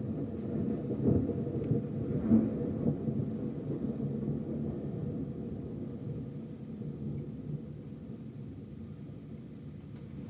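Rolling thunder in a spring thunderstorm: a deep rumble that swells twice in the first few seconds and then slowly fades, with rain falling.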